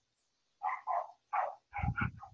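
A dog barking: a quick run of short barks starting about half a second in, quieter than the nearby voice.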